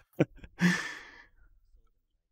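A man's brief laugh: a short voiced huff about a fifth of a second in, followed by a breathy, sigh-like exhale lasting about half a second.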